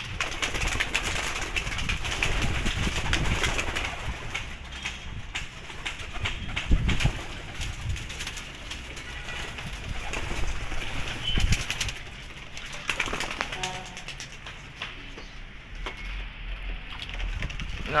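Homing pigeons cooing at the loft, with wing flaps as birds take off from the landing board.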